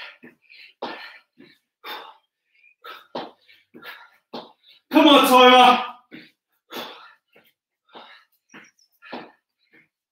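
A man breathing hard from exertion during plank jump-ins: short, sharp exhales and grunts about two a second, with one loud drawn-out groan about five seconds in.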